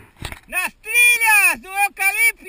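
A person's voice in long, high-pitched calls, each falling in pitch at its end, after a short knock near the start.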